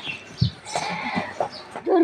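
A goat bleats once, a short call about a second in, preceded by a soft thump.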